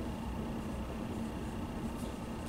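Classroom room tone: a steady low hum with faint even hiss and no distinct events.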